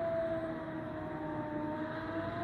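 Air-raid siren wailing, its tone sliding slowly down and then back up, with a second, lower tone rising beneath it, over a steady background noise.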